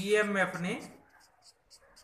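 Marker pen writing on paper, short scratchy strokes. In the first second a loud drawn-out voice-like call, under a second long, rises above the writing.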